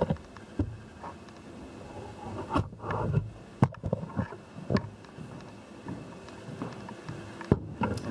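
Footsteps and handling knocks from someone walking through a building while carrying a handheld camera. The sounds are uneven, with a few sharper clicks and knocks between about two and a half and five seconds in.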